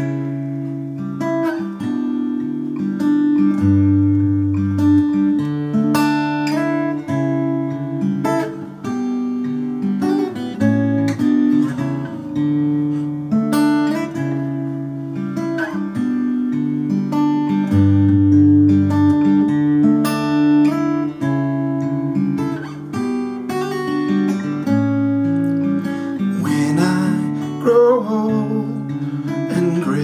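Takamine EF261S-AN acoustic-electric guitar played in a slow picked instrumental intro: a continuous run of ringing chord notes, with a deep bass note sounding twice. It is picked up by a camera microphone with a touch of reverb from a small acoustic amp.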